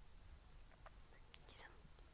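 Near silence: faint studio room tone with a few soft ticks.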